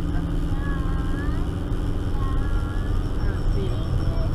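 Manual Ford Festiva's stock 63 hp four-cylinder engine running steadily under heavy load while towing a trailer uphill at low speed, heard from inside the cabin as a steady low drone.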